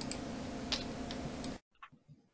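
Steady faint room hiss with a few soft clicks, then the sound cuts off abruptly about three-quarters of the way through into near silence.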